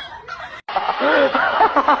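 A man laughing loudly in rapid, evenly repeated 'ha-ha-ha' pulses, about six a second. The laugh starts abruptly about two-thirds of a second in, right after a brief cut.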